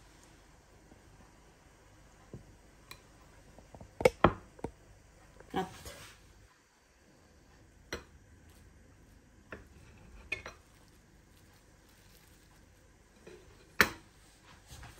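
Kitchen knife cutting through a soft steamed cake on a ceramic plate, the blade knocking against the plate in a series of short sharp clicks. The loudest come as a pair about four seconds in and once more near the end.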